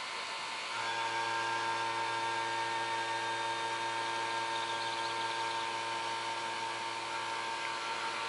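Car AC vacuum pump running steadily. About a second in, its sound settles into a hum with a clear pitch as the manifold gauge valves are opened and it starts pulling a vacuum on the AC system.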